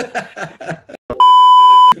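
A chuckle and a few words, then a loud, steady beep on a single pitch lasting about three-quarters of a second. It starts a little past a second in and cuts off suddenly: a censor-style bleep tone edited into the sound track.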